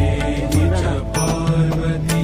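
Devotional music: held tones over a steady bass, with a percussive strike at the start and another about a second in.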